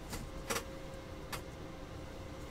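Trading cards being dealt and set down onto stacks on a tabletop: three short taps, the loudest about half a second in, over a faint steady hum.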